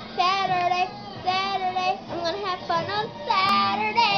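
A young girl singing unaccompanied in about four short phrases of held notes, the last one loud and open-mouthed.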